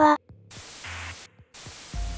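Two bursts of static hiss, a censor sound effect standing in for redacted words. The first starts about half a second in and lasts about a second; a shorter one follows near the end. Quiet background music plays beneath.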